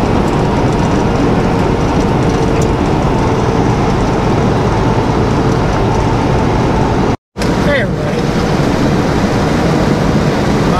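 Steady engine drone and road noise inside a semi-truck cab cruising at highway speed, cut by a brief dropout to silence about seven seconds in.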